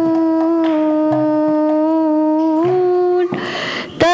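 A young woman's solo voice singing a devotional song, holding one long steady note, then taking a breath about three seconds in before the next phrase.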